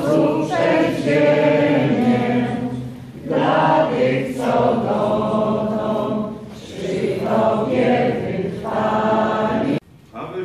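A congregation singing together in long phrases, with short breaks between them. The singing cuts off abruptly near the end.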